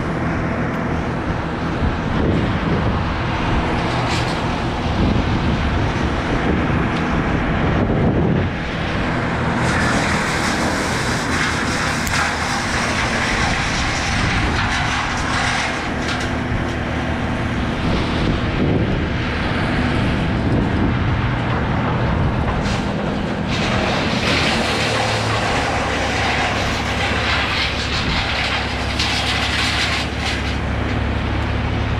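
A motor engine runs steadily in the distance, a low hum whose tone shifts about 25 seconds in, under a rush of noise that rises and falls.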